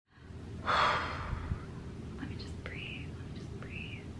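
A woman's breathy exhale or sigh, the loudest sound, about a second in. Two faint high tones follow near the end, each rising and falling.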